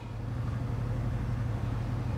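A steady low background hum with a faint even noise and no distinct events: room noise between narration.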